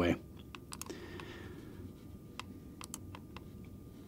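Faint, irregular clicks and taps of a computer keyboard and mouse being operated, about ten in all.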